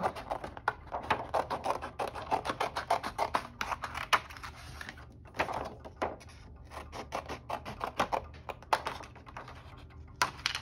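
Scissors snipping through a laminated plastic sheet: a quick, irregular run of short crisp cuts, with a brief pause about halfway.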